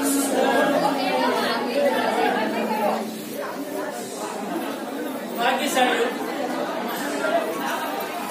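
Indistinct talking and chatter from a gathering, echoing in a large hall, with no clear words.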